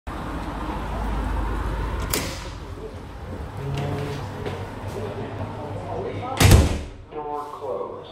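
Automated public toilet's stainless steel door shutting with one loud thud about six and a half seconds in, after a sharp click near two seconds.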